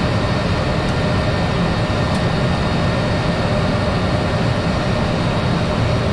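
Cessna 208 Grand Caravan's Pratt & Whitney PT6A turboprop and propeller running steadily at low taxi power, heard from the cockpit as a constant loud drone with a faint steady whine above it.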